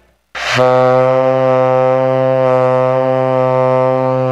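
Saxophone holding one long, steady low note, starting about half a second in after a brief silence.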